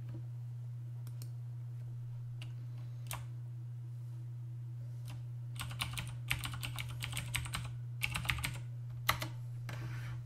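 Computer keyboard being typed on: a few scattered key clicks, then a quick run of keystrokes entering a web address, ending in one sharper single keystroke, over a steady low hum.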